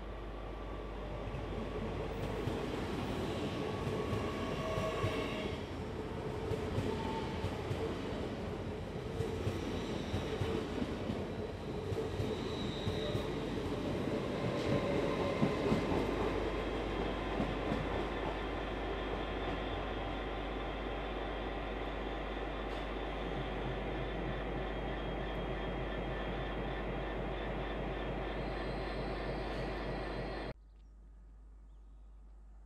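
LNER Azuma (Hitachi Class 800-series) train running along a station platform, a steady rumble of wheels on rail with high squealing tones in the first few seconds. It gives way to a steadier hum in the second half.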